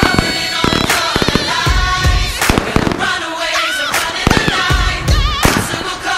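Firework shells bursting in several sharp bangs and low booms with crackle, heard over a music track with a melody.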